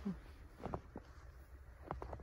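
Footsteps crunching in fresh, unswept snow: a few short, squeaky crunches underfoot.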